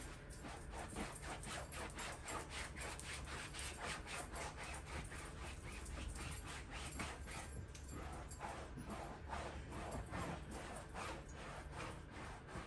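A brush scrubbing wax into a chair's painted fabric seat, a quick, even swishing of about three strokes a second.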